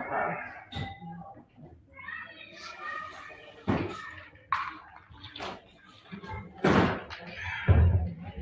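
Tall sash windows being pulled down and shut, giving several knocks and thumps; the heaviest come near the end, the last a deep thud. Faint voices murmur in between.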